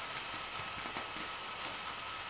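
Faint steady background hiss of room tone and recording noise, with a thin steady high tone running through it and a few soft ticks.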